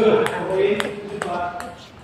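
Table tennis ball clicking sharply off bats and the table, about five knocks a few tenths of a second apart, with indistinct voices over them.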